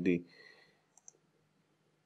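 A single computer mouse button click, press and release in quick succession, about a second in, after the tail of a spoken word.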